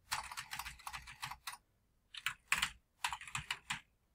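Typing on a computer keyboard: a fast run of keystrokes, a short pause about a second and a half in, then two more quick runs.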